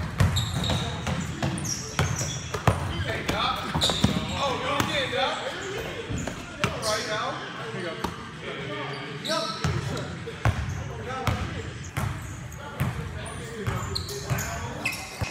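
Basketball game in a large gym: the ball bouncing on the court in repeated sharp thuds, with players' voices calling out over it.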